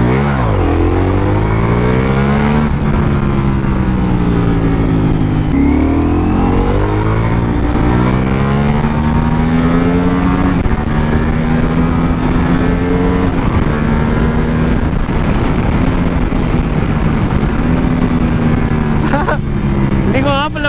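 Ducati Multistrada V4 Pikes Peak's 1,158 cc V4 engine, heard from the rider's seat while riding in second gear. Revs climb under throttle, ease off, climb again, then settle to a steady cruise for the second half.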